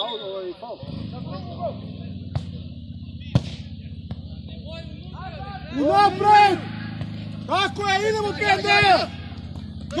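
Men shouting loudly during amateur football play, in two bursts about six and eight seconds in. Beneath them runs a steady low hum, and two sharp knocks come early on.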